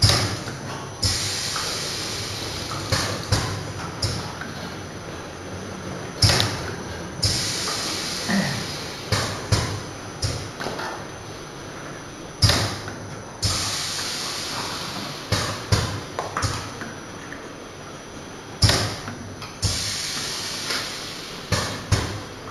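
Pneumatic jar-filling machine cycling: a sharp clack about every six seconds, followed a second later by a hiss of air that fades away, with lighter mechanical clicks and knocks between the cycles.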